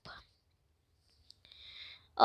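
Near silence, with a faint tick and then, near the end, a soft breath drawn in.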